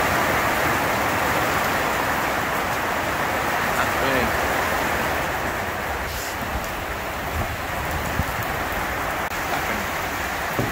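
Heavy rain pelting a corrugated iron roof: a dense, steady hiss that eases slightly toward the end.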